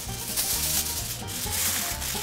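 Aluminium foil crinkling and rustling as a sheet is folded and pressed down by hand over food, with background music underneath.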